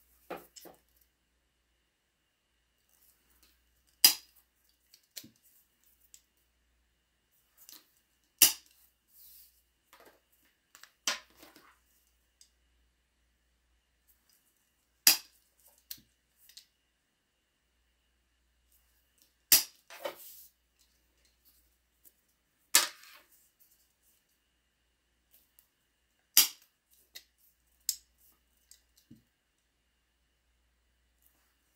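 Hand-held hole punch pliers snapping shut through the ends of a cork leather strap, about seven sharp snaps spaced a few seconds apart, with lighter clicks and handling of the tool and strap in between.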